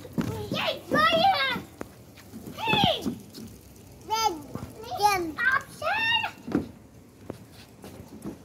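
Young children's voices: a run of short, high-pitched calls and shouts, about six of them with pauses between, while playing.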